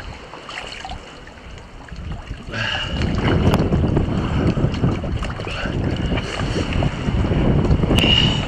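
Seawater rushing and churning around a camera held underwater, a rough low rumble that is fairly quiet at first and swells up about two and a half seconds in.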